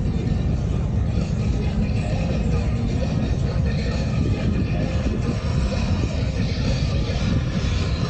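Polaris Slingshot three-wheelers driving past one after another, their engines making a steady low rumble.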